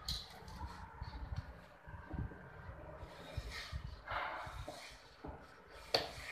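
Carved wooden temple parts being handled and fitted by hand: scattered knocks and taps of wood, with a sharp knock at the start and another just before the end.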